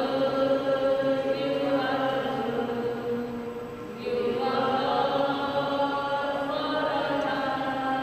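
A slow hymn sung in long held notes during the offertory of a Catholic Mass, with a short break between phrases about four seconds in.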